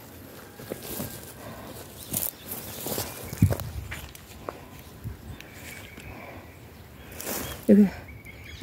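Footsteps on dry garden soil with irregular rustling and a few soft thumps, the loudest about three and a half seconds in.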